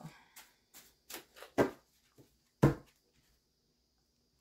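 A tarot deck being shuffled by hand: a run of short card slaps and flicks, two of them louder in the middle, then quiet for about the last second as the shuffling stops.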